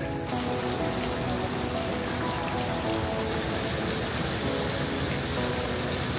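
Heavy rain pouring down onto the water of an open-air swimming pool, a steady, even hiss of countless drops striking the surface.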